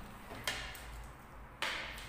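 Two short knocks of tableware being handled on a table, about a second apart, the second one louder.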